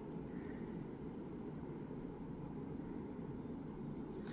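Faint steady background noise, room tone, with no distinct sounds.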